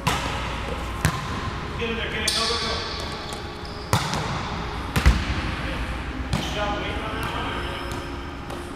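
Volleyball being hit and bouncing on a hard sports floor in a large, echoing gym: a string of sharp smacks, with the spike about four seconds in and the ball hitting the floor a second later as the loudest, deepest slap.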